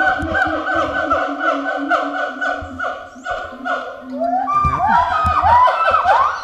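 Siamangs and black-handed gibbons calling back and forth, very loud: a fast run of repeated hoots, about four a second, breaking into rising whoops near the end.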